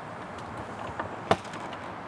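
A sharp click about a second in as the travel trailer's hold-open door latch is released, preceded by a fainter click, over a steady background hiss.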